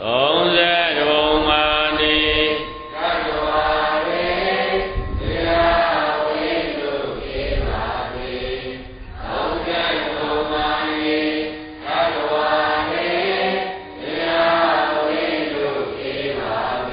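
Buddhist devotional chanting: voices intoning in sustained, evenly paced phrases a few seconds long, with short breaths between them.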